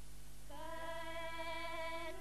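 A single voice singing a funeral lament: after a short pause it comes in about half a second in on a long held note that wavers slightly in pitch.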